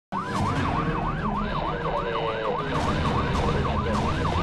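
Emergency-vehicle siren in fast yelp mode, its pitch sweeping up and down about three times a second, over steady street and traffic rumble. It starts abruptly just after the narration stops.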